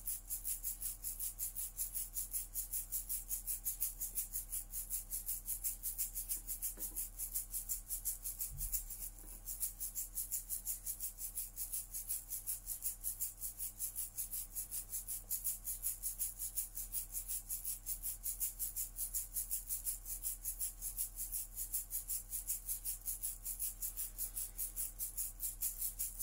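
Soft background music: a steady, shaker-like rattle pulsing about three to four times a second over a faint, even low drone.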